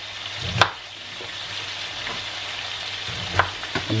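Onions, garlic and celeriac sizzling steadily as they sauté in a pan, with a few sharp knife strokes through cauliflower onto a chopping board: one about half a second in and two close together near the end.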